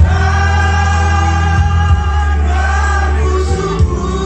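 A man singing a Batak song through a microphone, with many guests' voices joining in, over amplified accompaniment with a steady bass. The notes are long and held, with a brief break about halfway.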